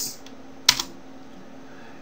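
A single computer-keyboard keystroke, a sharp click about two-thirds of a second in, entering a typed equation into a graphing program so that the line is drawn, over a faint steady hum.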